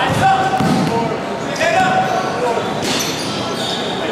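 Basketballs bouncing and being handled on a hardwood gym court, with the echo of a large hall.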